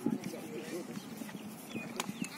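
Indistinct background chatter of several voices, with no clear words.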